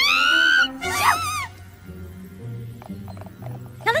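A cartoon character's loud wavering vocal cry, rising in pitch, then a second shorter one about a second in, followed by soft background music.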